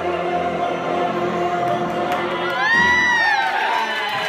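A group of people singing together, holding a long note in harmony, with high gliding whoops and cheers breaking out over it about two and a half seconds in.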